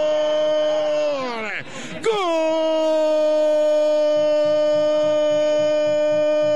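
A radio football commentator's drawn-out goal cry, one long 'gol' held on a steady pitch. About a second and a half in his voice sags and breaks as his breath runs out, then about two seconds in he takes the cry up again on the same note and holds it.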